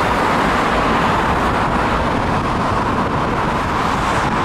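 Steady traffic noise from a busy multi-lane road: a continuous wash of tyre and engine sound from many passing cars.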